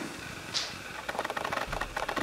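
Faint, irregular small clicks and handling noise in a quiet room, with one brief soft hiss about half a second in.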